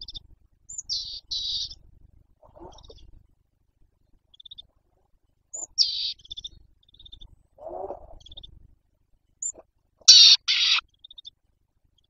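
Birds calling: short, high chirps in scattered bursts, the loudest a pair of calls near the end, with two lower, rougher calls in between.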